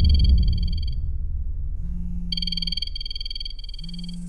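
A mobile phone ringing with a high, trilling electronic ringtone. The first ring ends about a second in, and a second ring starts just past halfway and stops near the end, over a deep rumble.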